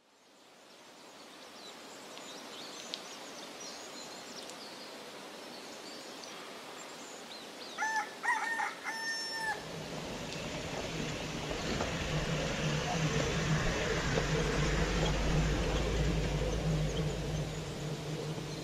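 Outdoor ambience fading in, with faint bird chirps and a rooster crowing once about eight seconds in. After the crow, a low steady rumble builds and grows louder through the rest.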